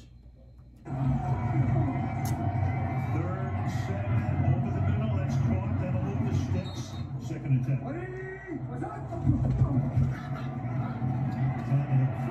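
Audio of a televised NFL game: commentators talking over a steady low rumble of stadium sound, starting about a second in.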